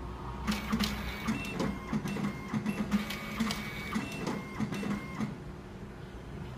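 Hitachi passbook printer (older model) printing a passbook: a run of quick buzzing print passes and clicks of the carriage and paper feed, starting about half a second in and stopping after about five seconds.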